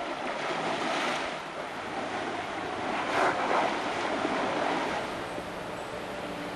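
Water splashing and churning as an Asian elephant wades through a river, with louder surges about a second in and again around three seconds in.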